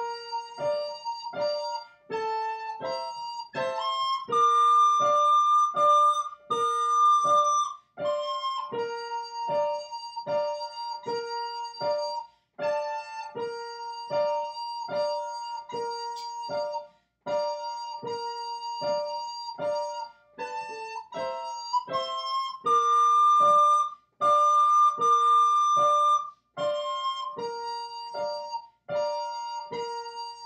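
Keyboard playing a simple melody, single notes struck at an even pace of about two a second, with a few longer high notes held in between.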